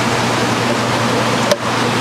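Steady rushing of water and air from rows of aquariums' filtration and aeration, with one sharp click about one and a half seconds in.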